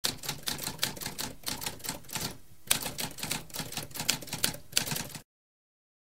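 Typewriter typing: a rapid run of key strikes, with a short pause about halfway. It stops suddenly a little after five seconds.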